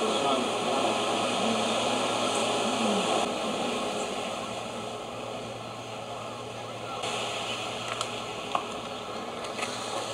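Indistinct background voices over a steady hiss and a low, constant hum. After about three seconds the sound drops quieter, leaving mostly hiss, with a few faint clicks near the end.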